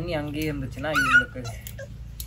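Young beagle puppy whining in two drawn-out cries, the second rising to a high squeal just over a second in, while it is rubbed dry with a towel.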